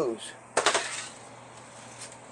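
A metal sheet pan lined with foil and holding a wire rack is set down on a glass stovetop: a short metallic clatter of several quick clicks and rattles about half a second in.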